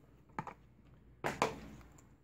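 A few small clicks and handling noises from a plastic water filter straw being turned in the hands: a sharp click early on and a louder short rustle about a second and a quarter in.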